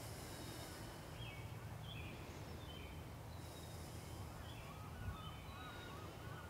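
Faint birds calling: short, high chirps scattered through, then a run of quick wavering calls near the end, over a steady low background hum.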